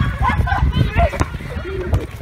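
Children shouting and calling to each other during an outdoor soccer game, with a heavy low rumble on the microphone and one sharp knock a little over a second in.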